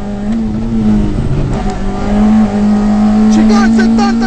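Rally car engine heard from inside the cabin, running hard at high revs. The note drops briefly just after the start and again about a second in, then holds steady.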